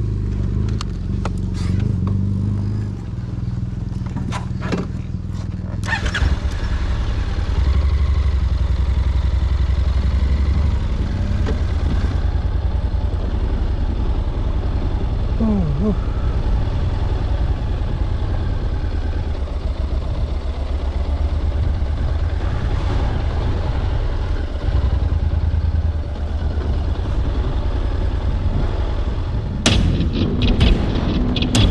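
Honda NC750X motorcycle's parallel-twin engine running at a steady pace on a dirt road, with tyre and wind noise. A few sharp clicks and knocks come in the first six seconds.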